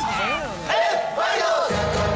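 Cheer-dance music with a drum beat stops right at the start, and several voices cheer and whoop in rising and falling shouts.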